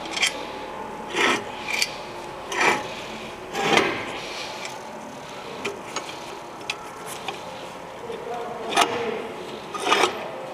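The steel clamp and sliding parts of a spindle moulder's tenoning carriage being worked by hand: a handful of short metallic scrapes and clunks, several in the first four seconds, then a pause and two more near the end.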